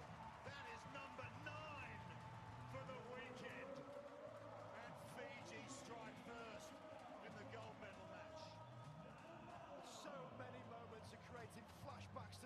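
Music over the stadium sound system with a repeating bass line, mixed with a background of crowd voices and scattered shouts.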